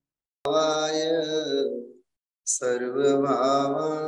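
A man's voice chanting a mantra in long, steadily held tones, in two phrases with a short break about two seconds in; a sharp click comes just before the chanting starts.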